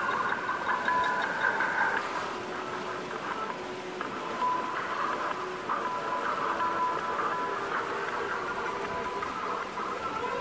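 Electric motor and gearbox whine of an Axial SCX10 II RC crawler as it crawls over rock. The whine comes and goes and shifts with the throttle, with light knocks of the tires on stone.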